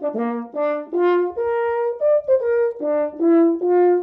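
French horn playing a short melodic phrase of about a dozen notes that moves up and down, ending on a longer held note.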